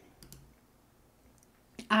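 A few faint clicks from computer input, two in the first half and one more near the end, over quiet room tone.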